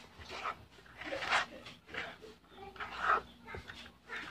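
A spoon stirring and folding a thick, sticky pastillas dough of condensed milk, powdered milk and crushed cookies-and-cream biscuits in a plastic bowl. It makes a series of short, irregular wet scraping and squishing sounds.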